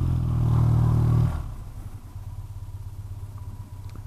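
BMW Airhead air-cooled flat-twin motorcycle engine running at steady revs under throttle, then dropping off about a second and a half in as the throttle closes, leaving a quieter low engine note.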